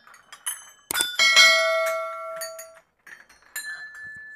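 Row of hanging brass temple bells rung by hand with a series of strikes. The loudest strike, about a second in, rings on with several clear tones for nearly two seconds. Lighter strikes follow, and the last one is still ringing at the end.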